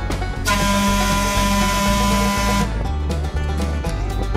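A trolley's air horn sounds one held blast of about two seconds, over background music.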